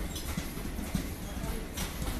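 Passenger train coaches rolling past, their steel wheels clacking irregularly over rail joints above a steady low rumble.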